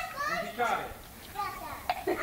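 Children's voices talking, mostly in the first second, with a short click near the end.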